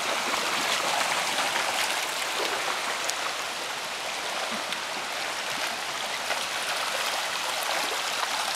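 Shallow creek running over gravel and stones: a steady rushing of water.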